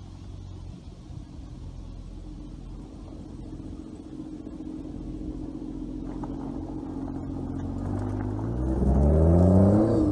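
BMW Z4 M40i's turbocharged inline-six running at low revs, growing steadily louder as the car approaches. Over the last second or two it revs up, rising in pitch as the car accelerates.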